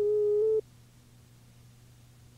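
A steady electronic tone that cuts off abruptly about half a second in, leaving only a faint low hum.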